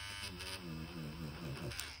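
Derwent battery-operated eraser's small motor buzzing as its spinning tip rubs pigment off paper, the pitch wavering with the pressure, then stopping shortly before the end as it is lifted off.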